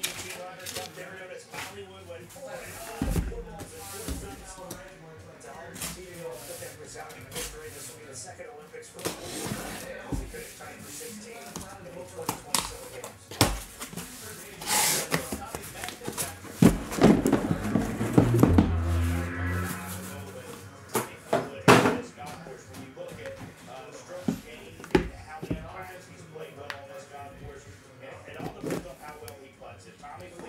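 A cardboard case of trading-card boxes being handled and opened on a table: scattered knocks, taps and thumps as the boxes are moved and set down, with a louder, longer scrape around the middle. Background music plays underneath.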